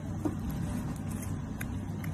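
A cat chewing a crisp lettuce leaf, with a few faint crunches, over a steady low rumble.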